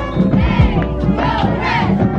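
Music with a beat, with a group of cheerleaders shouting over it twice.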